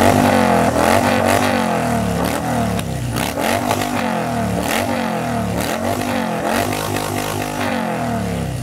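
Motorcycle engine revving over and over, its pitch swinging up and down many times in quick succession and holding steadier near the end.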